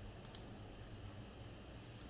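A few faint computer clicks, a close pair about a quarter second in and fainter ones later, over a low steady room hum.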